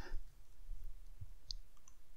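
A faint single computer-mouse click about a second and a half in, over a low steady background hum.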